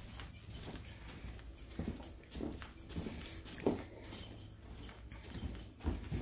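Footsteps on a carpeted floor, soft irregular thuds about every half second, over a steady low hum.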